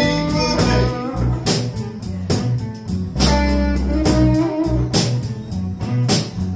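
Live electric blues band playing an instrumental passage, guitar to the fore over bass and drums with a steady beat.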